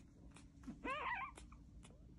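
A very young French bulldog puppy gives one short squeal about a second in. It rises in pitch and then wavers, lasting about half a second, over faint clicks and rustles of handling.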